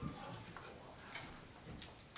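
Faint, irregular clicks and knocks of people moving about a room during a break: footsteps, chairs and desk items being handled.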